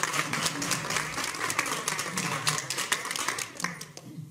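A group of people applauding with many hands clapping fast, dying away just before the end.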